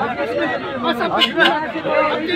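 Several men talking at once in a close crowd: overlapping chatter as a sale is haggled over.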